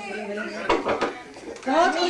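Tableware clinking, a few sharp clicks about halfway through, amid people talking.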